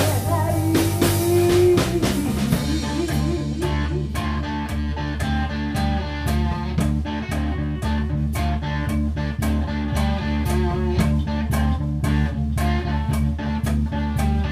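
Live rock band playing a song: electric guitar, bass guitar and drum kit. Bending held notes stand out over the first couple of seconds, then the band settles into a steady, even beat.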